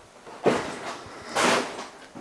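Two short scuffing noises about a second apart, the second one brighter and hissier.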